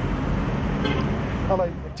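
Road traffic noise: a steady rumble of passing vehicles, with short pitched sounds about a second in and again near the end.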